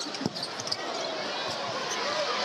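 Basketball bouncing on a hardwood court a couple of times, a sharp knock about a quarter second in and another near the end, over the steady murmur of an arena crowd.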